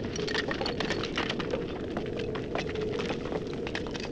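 A dense crackling with many sharp crackles over a rumbling noise and a steady low hum, fading up at the start.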